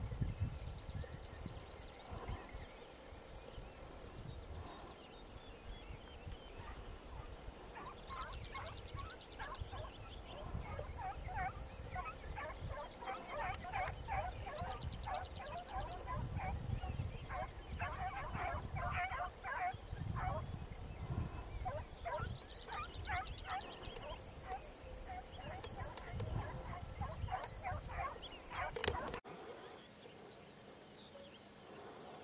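Birds calling in long runs of short, rapid, repeated notes that build up after the first several seconds and go on until near the end, with low wind or handling rumble on the microphone and a sharp click near the end.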